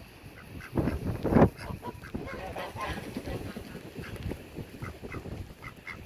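Ducks calling in a string of short, repeated quacks, with a brief loud rush of noise about a second in.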